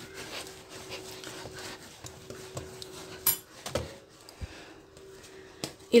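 Hands rubbing and rolling bread dough against a granite countertop, with a sharp click a little over three seconds in and a knock just after. A faint steady hum runs underneath.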